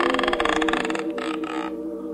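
Radio sound effect of an old windmill turning: a rapid clicking rattle for about the first second, then a short hiss, over a steady held musical chord.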